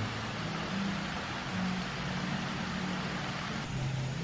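Steady outdoor background noise: an even rushing haze with a faint low hum, and no distinct events.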